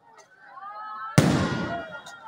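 An aerial firework shell bursting with one loud, sharp bang just over a second in, fading quickly.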